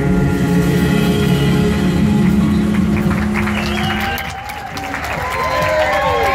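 A stage band with horns holds a long final chord that cuts off about four seconds in. Audience applause and cheering follow.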